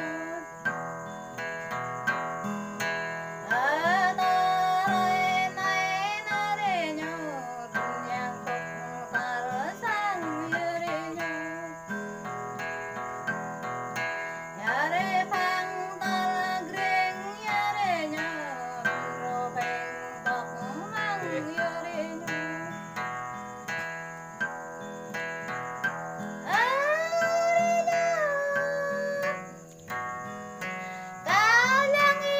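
A Jarai song: a high voice, most likely the woman's, sings in phrases of a few seconds that slide and waver between notes, over an acoustic guitar played steadily throughout.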